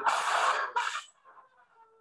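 A woman's harsh, strained cry during a seizure-like episode, heard through the played-back patient video: two rough bursts in the first second, the second shorter, followed by a faint thin high trailing note.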